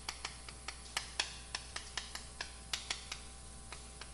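Chalk clicking and tapping against a blackboard during handwriting: a string of light, irregular ticks, about four or five a second.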